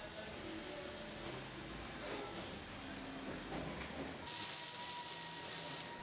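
Low, steady workshop background noise in a car-body plant: a soft rumble with faint hiss. About four seconds in it changes to a brighter hiss with a thin steady tone.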